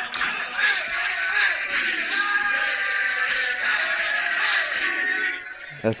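A recording of a high school football team's pre-game locker-room chant, many voices shouting together, played from a phone speaker held to a microphone. It sounds thin, with no bass, and it drops away near the end as the phone is lowered.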